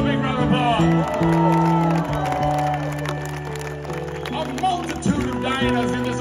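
A live band holding slow sustained chords at the close of a ballad, with a man's voice singing gliding runs over it near the start and again near the end, and a crowd cheering and clapping underneath.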